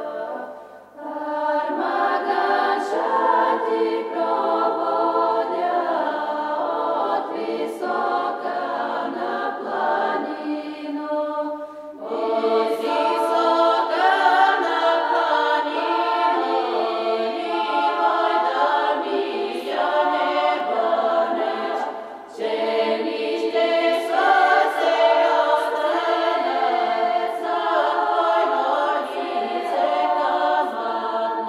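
Bulgarian women's folk choir singing unaccompanied in several parts at once. Its long phrases break off briefly about a second in, at about twelve seconds, and again at about 22 seconds.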